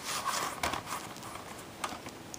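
Handling noise of plastic VHS tape cases: a quick run of light knocks and rustles in the first second, then a single click near the end.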